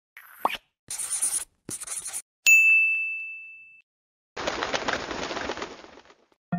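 Edited-in intro sound effects: a quick rising blip and two short swishes, then a single bright ding that rings out for over a second, then a longer hiss that fades away.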